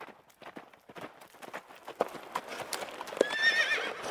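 Horse's hooves clip-clopping, getting louder as a horse-drawn wagon approaches, with a horse whinnying near the end.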